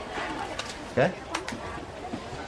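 Mostly speech: a man's single short questioning "Què?" about a second in, over a low background murmur of voices, with a few faint light clicks.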